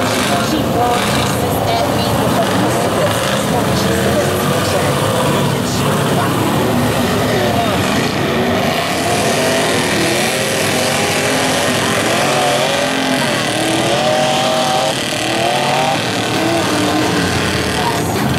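Lifted pickup mud truck's engine revving up and down as its big mud tyres churn through a deep mud bog, with voices over it.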